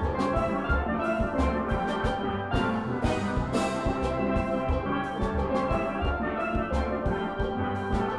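Steel band music: steel pans playing melody and chords over a steady drum beat.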